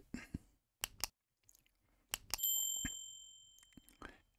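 Subscribe-button animation sound effect: a few short mouse clicks, then a single bell ding about two seconds in that rings out and fades over about a second and a half.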